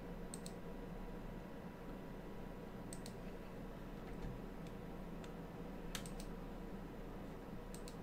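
Quiet clicking at a computer: four paired clicks a couple of seconds apart, the loudest about six seconds in, over a steady low electrical hum.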